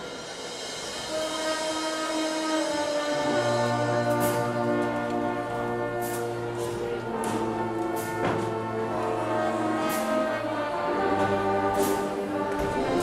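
High school marching band playing held brass chords that build in volume, with low brass coming in about three seconds in and sharp percussion hits about every two seconds.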